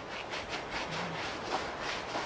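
Shoe-cleaning bristle brush scrubbing a suede sneaker upper in quick back-and-forth strokes, a rapid scratchy rubbing.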